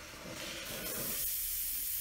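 Pork butt in barbecue sauce sizzling in a cast iron Dutch oven on a wood stove, the hiss swelling about half a second in and then holding steady.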